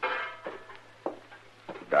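Footsteps, a few evenly paced steps drawing near, with a short pitched creak at the very start: a radio-drama sound effect of someone walking in through a door.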